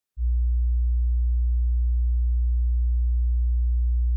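A steady, very low electronic sine tone, a deep hum, starting about a fifth of a second in.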